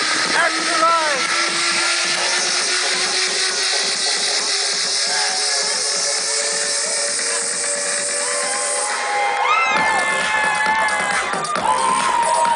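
Electronic dance music from a DJ over an outdoor stage's sound system: a build-up with a slowly rising tone and a bright hiss and no bass, then the bass and held synth chords come back in suddenly about ten seconds in. Whoops and shouts from the dancing crowd ride over it near the start.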